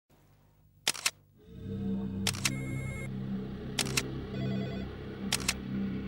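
Camera shutter clicking four times, about a second and a half apart, each a quick double click. Under it, a low sustained electronic music intro swells in about a second and a half in.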